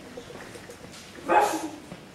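A single short dog bark about a second and a half in.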